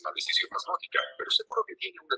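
Speech: a voice talking quickly and continuously, words not made out.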